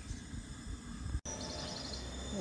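Outdoor background with a low steady rumble; a little after a second in, a high, rapidly pulsing insect chirping starts.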